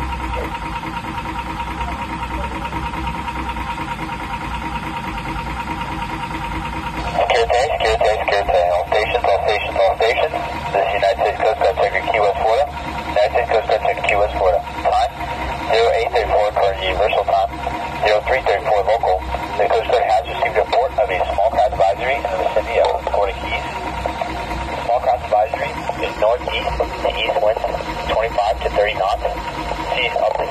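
Marine VHF radio speaker: about seven seconds of steady hiss, then a man's voice reading a Coast Guard marine safety and weather broadcast on channel 22A, thin and tinny through the small speaker.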